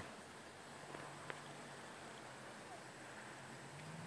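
Nearly quiet: a faint steady low hum, with two small clicks a little after a second in.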